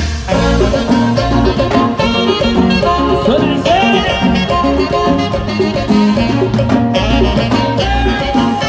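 Live conjunto band playing dance music: a steady beat and bass under a melody line, loud and continuous.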